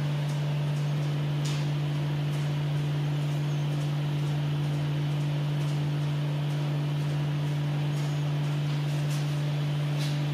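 A steady low hum that holds one pitch and never changes, with a few faint, light clicks over it.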